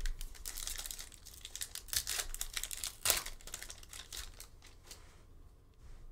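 Wrapper of an NBA Hoops Premium Stock trading-card pack being torn open and crinkled by hand: a thump at the start, then a dense run of sharp crackles for about five seconds, loudest around two and three seconds in.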